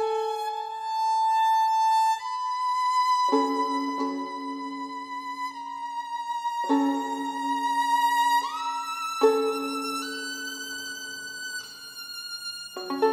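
Solo violin bowing slow, sustained double stops: a held upper line over lower notes, the upper line stepping higher about two-thirds of the way through.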